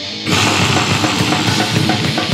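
War metal music: a distorted electric guitar plays on its own, then about a quarter second in the drums and full band come in at once, louder and dense.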